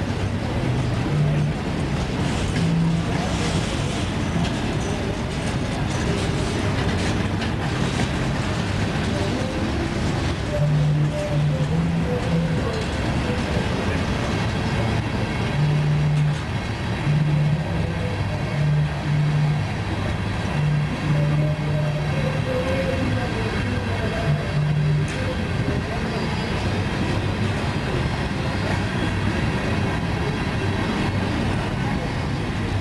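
Freight train of covered hopper cars rolling past at close range: a steady, unbroken noise of steel wheels running on the rails.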